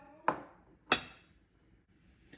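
Two sharp clinks of dishes knocking on the kitchen counter as a ceramic spice bowl is handled, the second one louder.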